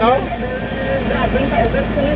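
Steady low engine and road rumble from a vehicle travelling along a highway, with a voice speaking a short word right at the start and fainter talk over it.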